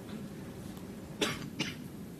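A person coughing twice in quick succession, a little past halfway, over a steady low room hum.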